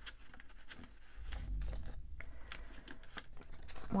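Paper dollar bills being handled and counted out by hand: rustling of banknotes with scattered short soft clicks, and a dull low bump about a second and a half in.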